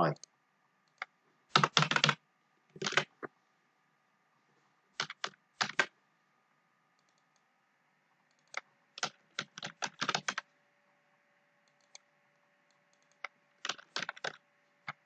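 Computer keyboard typing and mouse clicks in short irregular bursts, with pauses of a second or more between them.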